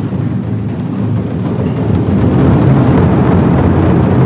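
A group of Chinese barrel drums struck together with sticks in fast, dense strokes that run together into a rumble, growing louder about halfway through.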